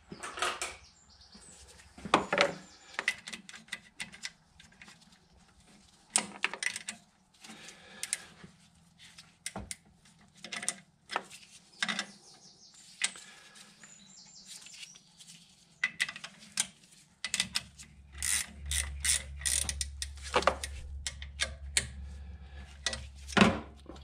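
Hand tools clicking and knocking on the alternator mounting bracket, with ratchet-like clicks, as the new drive belt is tensioned. A steady low hum comes in about two-thirds of the way through.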